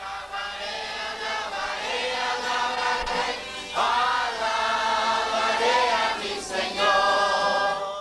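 A choir of voices singing held notes together, swelling louder about four seconds in.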